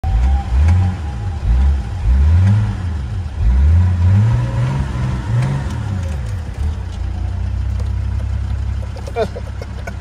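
BMW X5 E53's 3.0-litre inline-six turbodiesel revved in a series of quick blips, each a rising pitch, then settling to a steady idle about seven seconds in.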